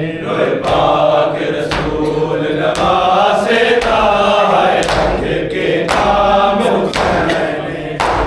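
Men chanting a nauha (Shia lament) together, with rhythmic matam: hands striking bare chests about once a second in time with the chant.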